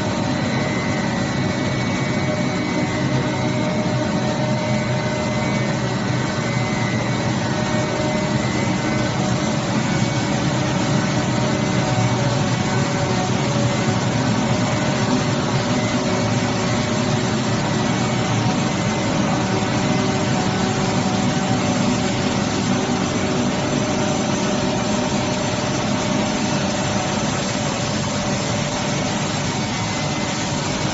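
Plastic film wet pelletizing line running: a steady machinery hum and rush with several steady tones layered through it.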